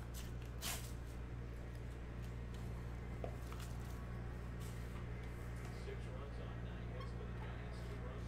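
Thin plastic wrap being peeled off a hard plastic trading-card case, with a sharp crinkle about half a second in, followed by a few faint rustles and light clicks of the case being handled, over a steady low hum.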